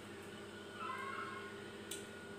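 A single short animal call, lasting under a second, about a second in, over a steady low hum. A sharp click near the end.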